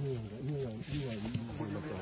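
A man's low voice, drawn out and wavering in pitch for about two seconds.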